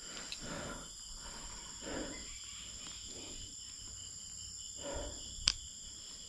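Night insects, crickets, chirring steadily in high thin tones, with soft crunching footsteps on brick rubble and loose debris every second or so. A single sharp click comes about five and a half seconds in.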